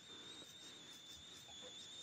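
Near silence: faint room tone and hiss, with a thin, steady high-pitched whine.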